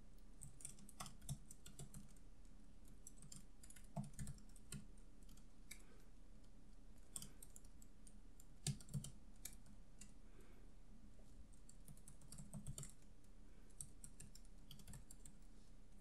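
Faint typing on a computer keyboard: irregular runs of key clicks with short pauses as code is typed.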